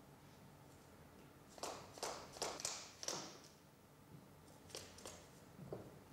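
Small steel handpiece parts knocking and clinking as they are handled: a quick run of about five light knocks around the middle, then two faint clicks near the end.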